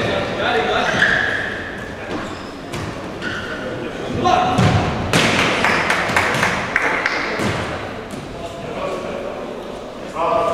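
Futsal ball being kicked and thudding on a hall floor, mixed with players shouting to each other, all echoing in a large sports hall. The loudest stretch comes about four to six seconds in.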